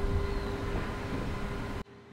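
Steady outdoor background hiss and low rumble with a faint steady hum that fades out about a second in; the sound cuts off abruptly just before the end.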